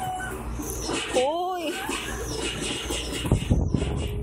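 A baby's short vocal squeal about a second in, rising and then falling in pitch, then a few sharp knocks shortly before the end as a plastic food container is handled.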